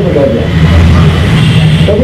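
A motor vehicle engine running close by: a low, steady rumble that swells about half a second in, with a man's speech at the start and again near the end.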